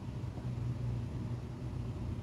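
Steady low hum with a faint hiss and no distinct events: the background drone of running electronics, the CED player and the console television.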